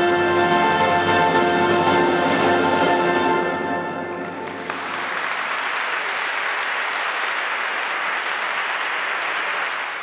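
A brass-heavy concert band holds a final chord with cymbals ringing, dying away about four seconds in. Audience applause follows and continues to the end.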